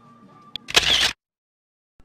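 Camera shutter sound effect: a click, then a short loud snap about half a second in that cuts off the faint background music, followed by dead silence.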